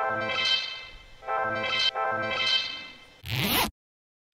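A clip of a pitched instrument playing back in Ableton Live: a long held note, then two shorter ones, each swelling and fading. About three seconds in there is a short burst of noise, and then the sound cuts to silence.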